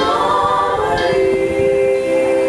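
Three women singing in harmony into microphones, moving through a few notes and then holding a long chord from about a second in.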